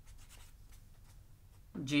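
Felt-tip marker writing on paper: a run of faint, short scratchy strokes.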